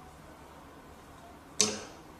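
Quiet room tone, broken about one and a half seconds in by a single brief, sharp vocal sound, shorter than a word, that dies away quickly.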